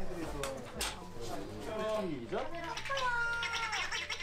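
A small dog whining in high, wavering cries that glide up and down, one held longer before falling away near the end, mixed with a woman's voice.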